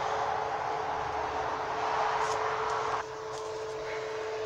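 Steady background noise with a constant hum; the noise drops suddenly about three seconds in.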